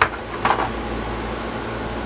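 Air conditioner running: a steady fan noise with a low hum underneath.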